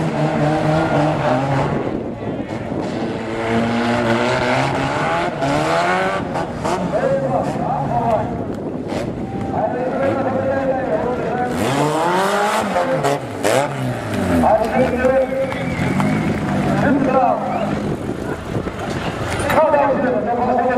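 Several banger-racing car engines running and revving together, their pitches rising and falling as the cars accelerate and slow, with a few sharp knocks in the middle.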